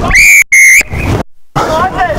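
Rugby referee's whistle: two short, loud blasts at one steady high pitch in quick succession, followed by players' voices shouting.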